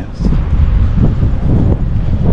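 Wind buffeting the microphone: a loud, uneven low rumble with no distinct tones.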